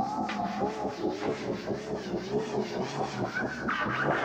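The commercial's soundtrack, heavily distorted by audio effects: a warbling, wobbling tone over a dense hum, dropping to a lower pitch about half a second in.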